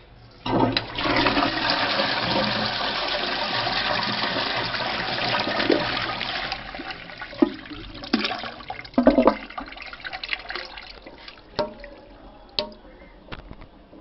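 Toilet flushed with a wall-mounted chrome lever: a loud rush of water into the ceramic bowl starting about half a second in, easing after about six seconds into a quieter trickle down the bowl, with several sharp knocks and clicks near the end.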